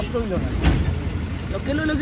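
A steady low rumble with a single sharp knock a little over half a second in; voices trail off at the start and start up again near the end.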